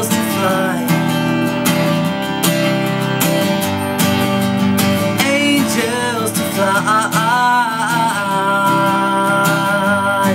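A man singing over a strummed Taylor 416ce steel-string acoustic guitar, with a long held sung note near the end.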